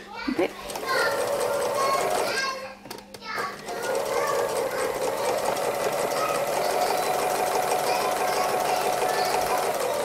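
Domestic sewing machine stitching free-motion embroidery at a steady speed. It stops briefly around three seconds in, then runs on evenly.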